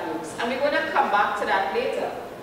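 Speech only: a woman speaking as she presents a talk.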